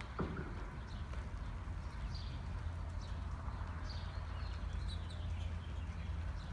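Hoofbeats of a horse loping on soft arena dirt, heard faintly over a steady low rumble, with brief high chirps every second or two. A single sharp knock just after the start.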